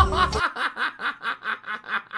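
A man laughing hard in a fast run of short 'ha' bursts, about six or seven a second. Background music cuts off about half a second in.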